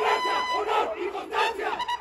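Many voices shouting and cheering together, overlapping yells rising and falling, in a break between bugle-and-drum passages.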